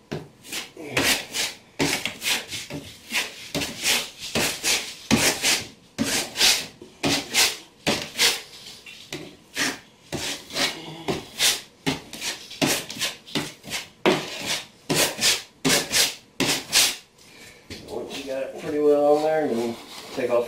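Flat trowel scraping over Schluter Kerdi waterproofing membrane in repeated short strokes, about one to two a second, pressing it into mortar and scraping off the excess.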